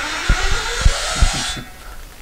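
Steady hiss from a karaoke microphone and speaker, with three dull thumps as the handheld microphone is handled; the hiss cuts off about one and a half seconds in.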